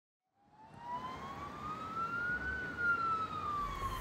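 Emergency vehicle siren in a slow wail, fading in about half a second in, its pitch rising slowly and then falling again.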